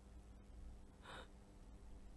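Near silence: low room hum, with one short, faint breath, like a gasp or sigh, about a second in.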